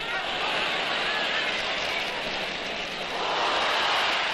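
Noise of a large football crowd, a steady dense wash of many voices that grows a little louder near the end as play reaches the goalmouth.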